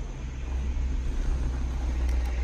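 Car engine running, heard from inside the cabin as a steady low rumble.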